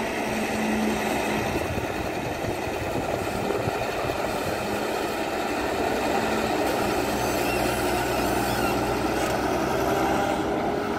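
Caterpillar crawler excavator's diesel engine running steadily under hydraulic load as the bucket digs in and lifts a load of soil, its note shifting slightly about seven seconds in.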